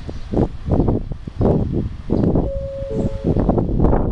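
Wind buffeting the microphone in irregular low gusts, with a brief steady tone about two and a half seconds in.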